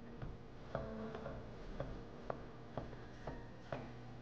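Chef's knife slicing mango into thin strips on a wooden cutting board: faint, light taps of the blade on the board, about two a second.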